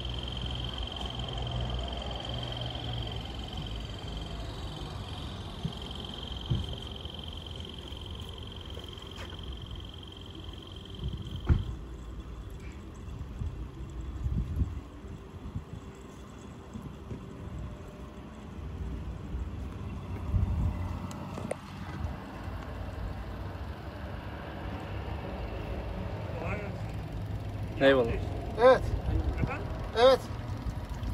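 Small diaphragm pump (a water-purifier booster pump run off two cordless drill batteries) running, sucking old power-steering fluid out of the reservoir through a hose. A steady high whine cuts off about eleven seconds in, and a low hum carries on with a few knocks.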